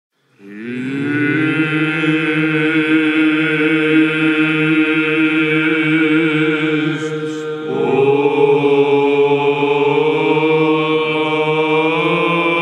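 Byzantine chant by male monastic voices: a steady low drone (ison) held under a wavering melodic line. It begins about half a second in, and a new phrase enters after a brief break about eight seconds in.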